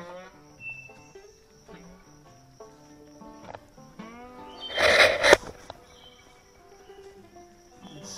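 Background music of slow held notes that step from pitch to pitch. About five seconds in there is a loud, noisy burst lasting under a second.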